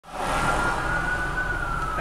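Emergency vehicle siren wailing, one slow tone that rises a little and then glides down in pitch, over the low rumble of traffic heard from inside a car.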